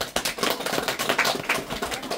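Applause from a small group of people: quick, dense hand claps.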